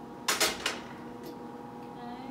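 A wooden spatula scraping and knocking against a stainless steel sauté pan while lentils are served out: three quick sharp strokes about half a second in, then one fainter stroke.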